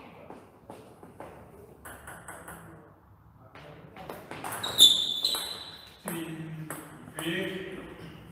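Table tennis rally: the celluloid-type ball clicking off the bats and the table in quick succession, growing loudest about five seconds in. A player shouts twice as the point ends.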